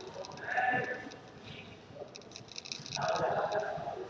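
A faint voice coming through a video-call connection in two short stretches, about half a second in and again from about three seconds in: a student reading aloud in answer to the teacher.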